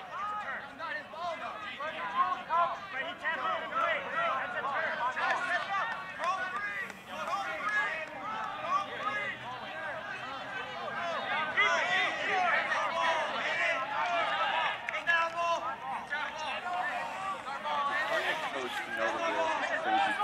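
Several people shouting and talking over each other at once, players and coaches arguing across a sports field with no one voice standing out.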